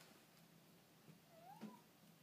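Tabby cat giving one short, quiet meow near the end, rising then falling in pitch: the cat asking at the door to be let out.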